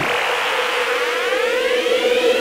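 Electronic intro sting: a steady held tone with a stack of tones sweeping slowly upward over a hiss.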